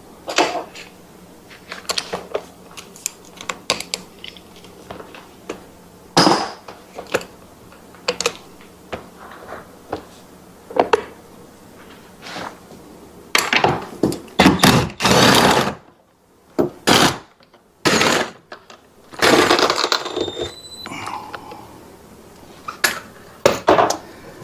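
Hand tools working on metal: a socket wrench and extension clicking and knocking while bolts are undone under a jet boat's pump. Scattered taps, with a couple of longer rattling bursts in the second half.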